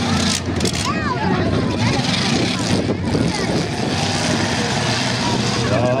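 Engines of several demolition derby pickup trucks running and revving as they drive around the arena, with voices over them.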